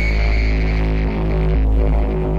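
Dark ambient minimal techno: a deep, steady bass drone under layered sustained synthesizer tones, with a high thin tone fading out right at the start.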